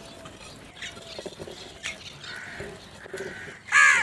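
House crows cawing: a few quieter caws from about halfway through, then one loud caw near the end.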